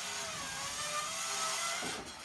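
Corded handheld electric circular saw cutting along a sapelli hardwood plank. A steady motor whine with a hiss, dropping a little in pitch early on as the blade takes the load, and tailing off near the end.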